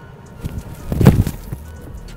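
An American football kicked off a tee: one sharp, solid thud of boot on ball about a second in, a well-struck kick that sounded really good, with a softer thud of a step half a second before it.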